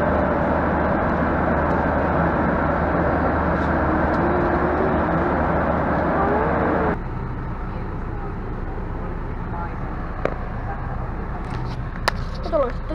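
Airliner cabin noise: a steady, loud rumble of jet engines and rushing air. About seven seconds in it cuts off abruptly to the quieter, steady engine rumble of a coach interior.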